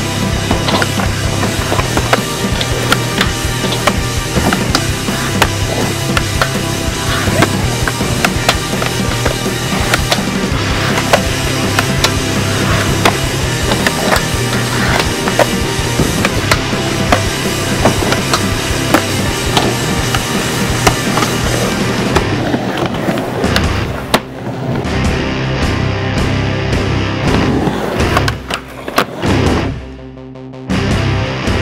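Skateboard wheels rolling on concrete and ramps, with repeated sharp clacks and knocks of the board popping and landing, under background music with a steady beat.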